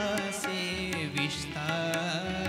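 Man singing a Hindi devotional song (bhajan) in a gliding, drawn-out line, over a sustained instrumental drone with hand-drum strokes.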